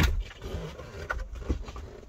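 Sharp knock from a wooden cover panel being handled inside a camper van, followed by a few smaller knocks and handling noises over a low steady hum.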